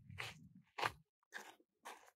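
Faint footsteps crunching on a red dirt and gravel path, about four steps at a walking pace.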